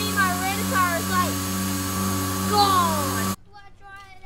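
A steady machine hum with a child's short, high vocal sounds over it; both cut off suddenly just after three seconds, leaving much quieter sound with a faint voice.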